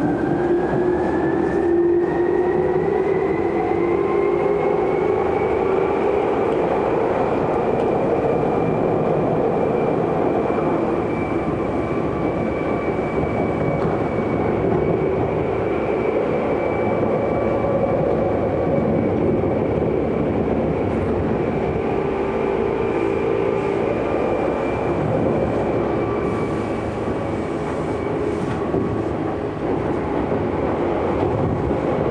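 Tokyu 8500-series electric train heard from inside a passenger car. A whine rises in pitch over the first six seconds or so as the train picks up speed, then holds steady at running speed over the continuous running noise of the car.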